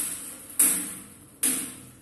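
Table tennis bat striking a ball mounted on a springy wire, in a steady practice rhythm: two sharp hits about 0.8 s apart, each fading over most of a second.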